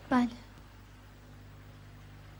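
A single short spoken word, 'baleh' ('yes'), with a falling pitch, followed by a steady low background hum.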